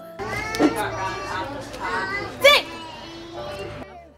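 Several children's voices chattering and calling over one another, with one loud high-pitched squeal about two and a half seconds in.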